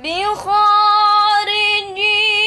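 A girl's voice reciting the Quran in melodic tilawah style: after a short breath she glides up into one long held note.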